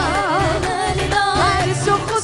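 A woman sings a Kabyle song live into a microphone, backed by a band with drums and bass. Her voice wavers through an ornamented run at the start, then holds longer notes.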